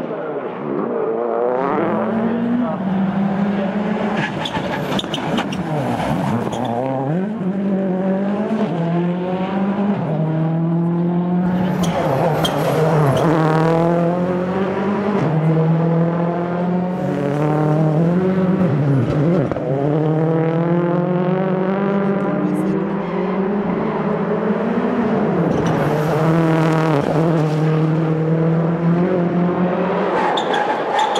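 Ford Focus RS WRC's turbocharged four-cylinder engine driven hard at racing speed, its note climbing again and again and dropping back with each gear change and lift for a corner.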